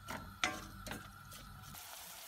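A few light clicks of a wooden spoon against a stainless steel pot as diced onion and carrot are stirred in olive oil, followed near the end by a faint steady sizzle of the vegetables frying.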